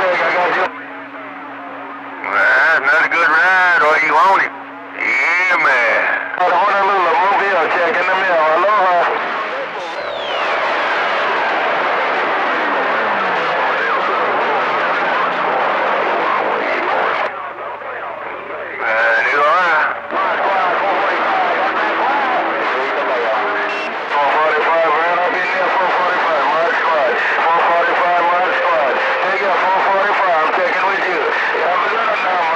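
Men's voices over a CB radio on channel 28 (27.285 MHz), carried in by distant skip and mixed with static. About ten seconds in, a whistle slides steadily down in pitch over roughly three seconds.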